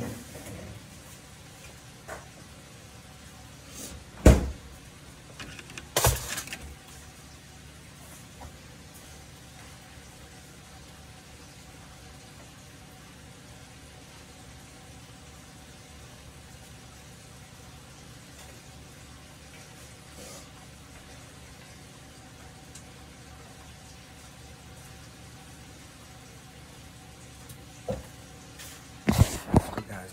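Microwave oven running with a steady hum, broken by two sharp knocks about four and six seconds in and a few bumps near the end.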